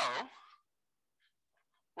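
A man's drawn-out "so" trailing off about half a second in, then near silence.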